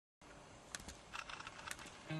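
A few faint, irregular clicks over low background hiss.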